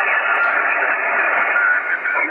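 Yaesu FTdx-10 HF transceiver's speaker on receive at 7.130 MHz with all noise filters off: a steady rush of band noise squeezed into the narrow voice passband, loud and with a weak voice station buried in it.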